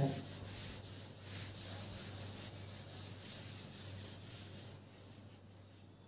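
Handheld duster rubbing over a whiteboard, wiping marker writing off in continuous scrubbing strokes. It is fairly faint and dies away about five seconds in.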